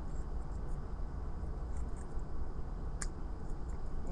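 Faint clicks of a metal fish-shaped Chinese puzzle lock and its key being handled, with one sharper click about three seconds in, over a steady low background hum.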